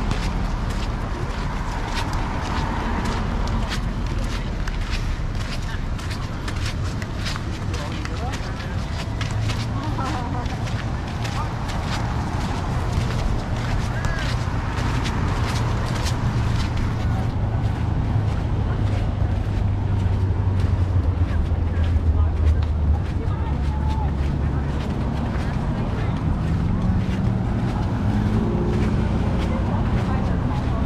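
Street ambience: passersby talking over a steady rumble of road traffic, with scattered footsteps and light ticks.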